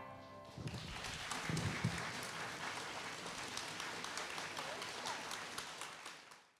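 The last chord of a choir song dying away, then quiet audience applause with scattered voices, which cuts off suddenly near the end.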